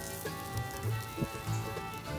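Soft background music with sustained tones and a gentle low pulse, over the sizzle of a folded tortilla frying in oil on a cast iron griddle.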